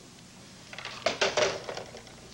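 A brief clatter of small knocks and clicks, about a second long, from hard objects being handled.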